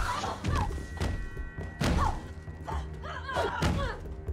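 Fight-scene punches and body impacts: several heavy thuds about a second apart, with grunts of effort between them, over a steady music score.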